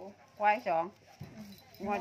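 Speech only: a woman talking in Thai, two short words about half a second in and more talk starting near the end.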